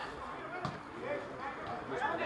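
Faint voices of football players calling out on the pitch, with one sharp thump of a ball being kicked about two-thirds of a second in.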